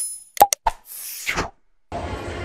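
Sound effects of an animated subscribe-and-share button graphic: a short ringing chime dying away, then a quick double mouse click and one more click about half a second in, followed by a noisy swish that falls in pitch. Steady street noise begins just before the end.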